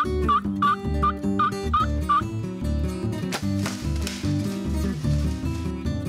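Theme music with a steady beat. Over the first two seconds comes a series of short turkey calls, about three a second. A crash comes about three seconds in, and the music carries on.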